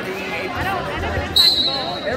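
A referee's whistle blown about one and a half seconds in, one loud steady high tone held to the end, over spectators talking. Just before it come a few dull thumps of wrestlers on the mat.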